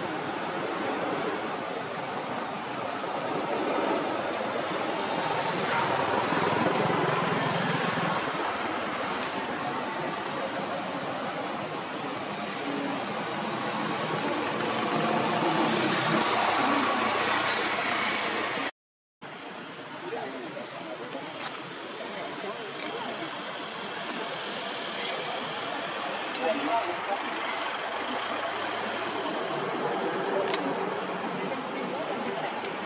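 Steady outdoor background noise with indistinct voices and a traffic-like rumble. No monkey call stands out. The sound drops out completely for a moment about two-thirds of the way through.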